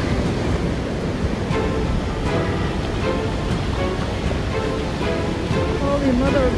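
Surf washing up on a sandy beach, with wind on the microphone, under background music.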